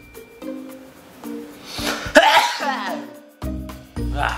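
A man sneezes once, about two seconds in, set off by the fumes of 502 superglue on the bottle's neck. Background music with held notes plays throughout.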